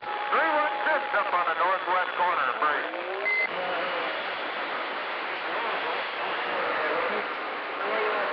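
Indistinct voices for the first three seconds or so, then a steady hiss of noise with faint traces of voices under it.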